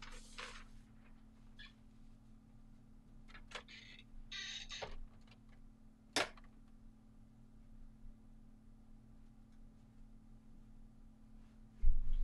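Hotronix clamshell heat press being pulled shut: a few soft rustles and light clicks, then one sharp clunk about six seconds in as the heated upper platen locks down. It clamps on a thick puzzle blank at a high pressure setting, which she fears is too much. A faint steady hum runs underneath.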